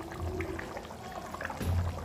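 Curry gravy boiling in an iron kadhai on a gas burner: a low steady hum with soft bubbling, swelling slightly twice.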